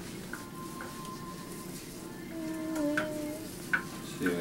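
Wet plaster-of-Paris cast bandage being rubbed and smoothed by gloved hands over a leg cast: a steady wet rubbing with a few light clicks. A brief steady tone sounds in the second half.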